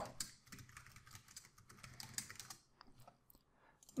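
Faint computer keyboard typing: a run of quick, irregular keystrokes that thins out near the end.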